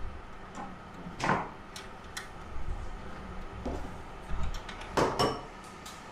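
Hands handling a steel wire hanging cable and its one-way gripper clip: scattered small clicks and rubbing, with two louder knocks, one about a second in and one near the end.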